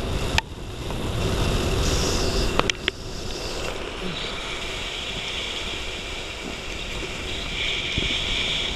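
Wind rushing over a skydiver's head-mounted camera under an open parachute canopy. There are sharp clicks about half a second in and a few more near three seconds, after which the rush settles a little quieter.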